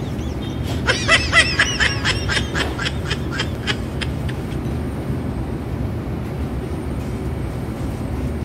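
A man laughing in a run of short repeated bursts for about three seconds, fading out, over a steady low room hum.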